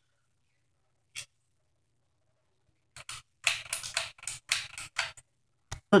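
Ceiling fan pull-chain switch being worked: a single click about a second in, then a quick run of sharp clicks over a faint low hum, and one last click near the end.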